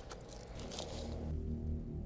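Metal bangle bracelets jingling faintly as the wearer's hands move, then a low steady hum.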